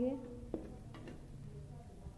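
A spoon stirring fried onions and egg in a steel kadhai, quietly, with a couple of light knocks of the spoon against the pan about half a second and a second in.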